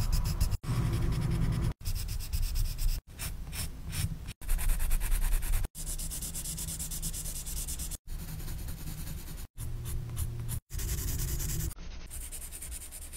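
Coloured pencil shading on sketchbook paper, with a steady scratchy rubbing from the strokes. It comes in short stretches broken by brief silent gaps every second or so.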